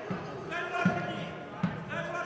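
Untranscribed shouting voices in a large hall, with three short dull thuds about 0.8 s apart.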